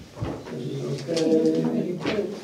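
A low-pitched voice talking indistinctly, in drawn-out murmured tones rather than clear words, after a soft knock about a quarter second in.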